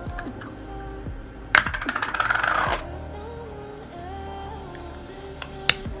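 Gold-coloured lid of a glass cosmetic jar being taken off and set down: one sharp clink about a second and a half in, followed by a rattling ring that fades over about a second. Faint background music runs underneath.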